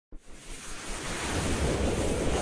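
A rushing, wind-like whoosh sound effect of an animated logo intro, swelling steadily from silence.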